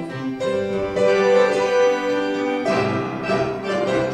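Organ playing a hymn tune through in held chords, the introduction before the congregation sings; a new chord sounds about two-thirds of the way in.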